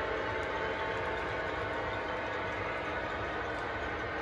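Lionel O-gauge model trains running on three-rail metal track: a steady rumble of motors and wheels.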